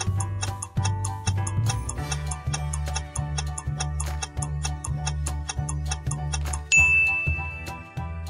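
Quiz countdown sound: background music with a steady bass beat and clock-like ticking over it while the timer runs. Near the end a bright ding rings and holds, marking time up.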